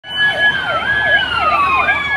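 Several vehicle sirens sounding together: one fast yelp that rises and falls about two and a half times a second, over a held wail that slides down in pitch and jumps back up near the end.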